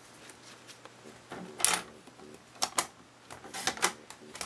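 Paper cutter trimming a strip of patterned paper: a few short, sharp clicks and knocks of the cutter and the paper being handled, the loudest about a second and a half in.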